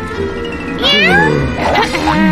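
A meow, one call rising then falling about a second in, over steady background music.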